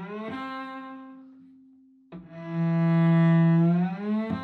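Cello, bowed, playing a slow shift twice. A low note slides up into a higher note that rings and fades away. About two seconds in, the low note is bowed again, swells, and slides upward near the end. The slide is done on the first finger before the pinky lands on the target note, a slowed-down way to practise an accurate shift.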